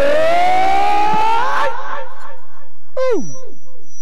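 A long sung note held by kirtan singers, its pitch sagging slowly and then rising, breaking off about two seconds in. About a second later comes a short vocal call that drops steeply in pitch.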